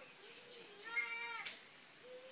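A young child's short, high-pitched whimper, about half a second long, about a second in.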